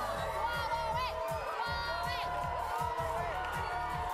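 Background music with a steady beat under a studio audience of children cheering and shouting.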